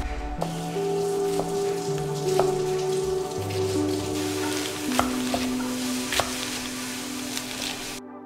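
Food sizzling in a hot frying pan, a steady hiss with a few sharp ticks, under soft background music with slow held notes.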